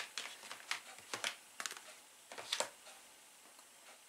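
Plastic shower-gel bottles being handled and set down on a counter among other bottles: a few light clicks and knocks, spread over the first three seconds.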